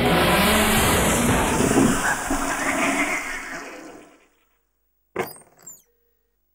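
Cartoon crash sound effect of a pile of household appliances tumbling: a long, noisy crashing rumble that fades out over about four seconds, then a short noisy burst near the end.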